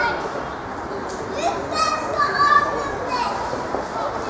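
Boys shouting and calling out to one another during a youth football match, several voices overlapping, with a louder high shout about two seconds in.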